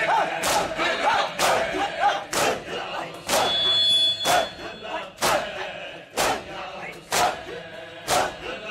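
Matam: a gathering of mourners beating their chests in unison, one sharp slap about every second, with the crowd chanting between the strokes.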